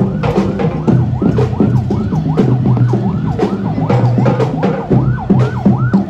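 Loud dance music for a street-dance routine: a fast, repeating siren-like sweep rising and falling several times a second over a steady drumbeat and a held low bass note.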